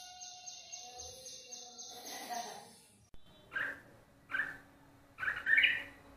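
A few seconds of music, then after a sudden cut a bulbul calling outdoors: three short bursts of calls about a second apart, the last the loudest and longest.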